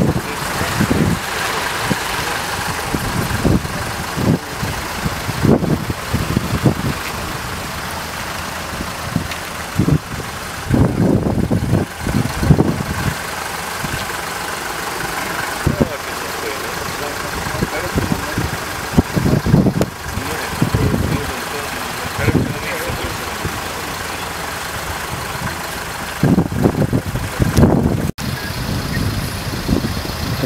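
Vehicle engines idling steadily, with indistinct voices.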